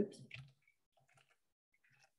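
A few faint, irregular computer keyboard keystroke clicks as text is deleted and retyped.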